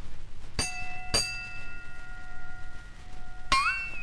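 A bell struck twice about half a second apart, its clear ringing tones hanging on and fading over a couple of seconds: a train-bell demonstration. Near the end a wobbly bell-like note bends upward in pitch.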